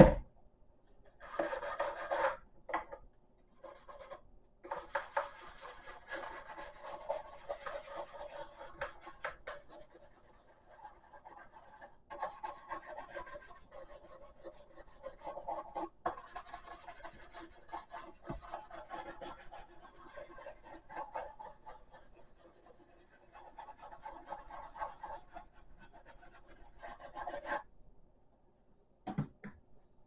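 A toothbrush scrubbing the textured surface of a snowman figure, a rasping, scratchy rubbing that comes in stretches with short pauses. A sharp knock sounds right at the start.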